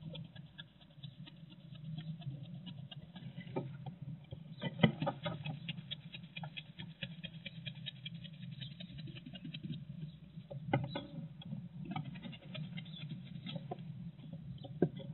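Rat and hedgehog scrabbling against each other in a wooden nest box: rapid fine scratching and rustling of claws, spines and paper-and-straw bedding, with a couple of louder knocks about five and eleven seconds in, over a steady low hum.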